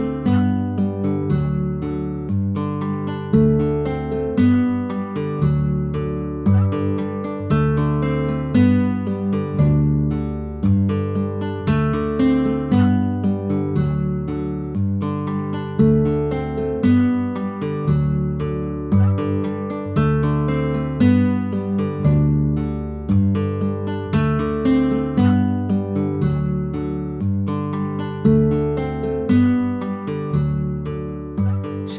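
Background music: acoustic guitar plucking notes in a steady, repeating pattern.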